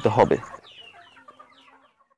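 A flock of Sonali chickens clucking and peeping faintly after a man's voice finishes a word at the start.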